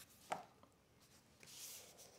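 Near silence, broken by one soft click about a third of a second in and a faint hiss near the end.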